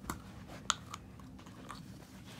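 Faint rustling and a few short clicks of curved paper cutouts being picked up and laid down by hand, with one sharper click a little before halfway.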